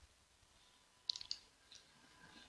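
Near silence broken by a quick cluster of three faint clicks about a second in, and one fainter click shortly after.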